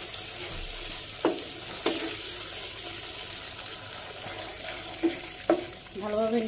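Tomato sauce with peppers and onions sizzling steadily in a nonstick frying pan while a wooden spatula stirs it, knocking and scraping against the pan four times.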